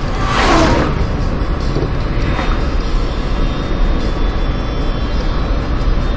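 Steady road and engine noise heard inside a moving car's cabin. In the first second a loud whooshing sound falls quickly from high to low pitch.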